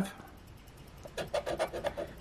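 A coin scraping the coating off a scratch-off lottery ticket, in a quick run of short rasping strokes in the second half.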